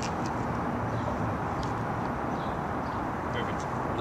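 Steady outdoor urban background noise, a broad even hum of street traffic, with faint brief voices.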